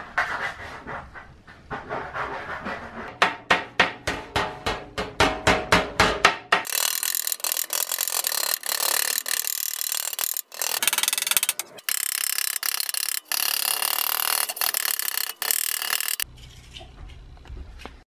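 A ball-peen hammer striking the brass bell of an old French horn in quick, even blows, about five a second. From about six and a half seconds in comes a steady, scratchy rubbing of 800-grit sandpaper on the brass bell, broken by a few short gaps. A quieter low hum follows near the end.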